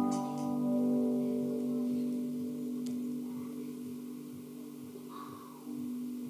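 A held final chord on electric guitar and bass, ringing out and slowly fading away.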